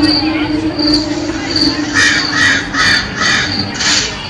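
Spooky sound effects played over a haunted-house carnival float's loudspeakers: a steady low drone, then from about halfway a quick run of five short calls, about two and a half a second.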